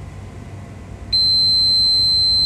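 Multimeter continuity beeper: a steady high-pitched beep starting about a second in, as the probes bridge a 2.2-ohm surface-mount resistor. The beep shows the resistor reads near-zero resistance and is not open, so it checks okay.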